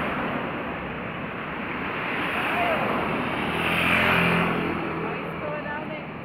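Street traffic by a seafront avenue: a steady road hiss, with a car passing close whose engine and tyre noise swell to a peak about four seconds in and then fade.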